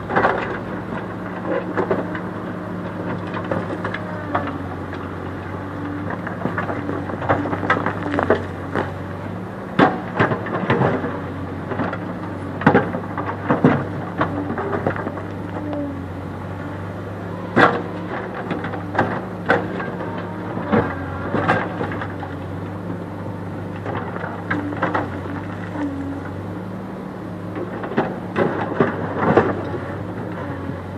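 CASE backhoe loader's diesel engine running steadily under load as its backhoe bucket digs into a bed of loose stones, with sharp clacks and clatter of rocks knocking against the bucket and each other, coming in bunches over and over.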